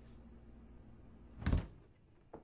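A steady low hum, then a door shutting with a single heavy thump about one and a half seconds in, after which the hum stops.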